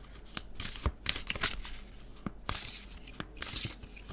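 A tarot deck being shuffled by hand: a string of irregular papery rustles and light card snaps.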